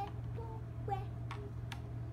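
A few light, sharp clicks of puzzle pieces being handled and set down on a hard surface, spread irregularly across two seconds.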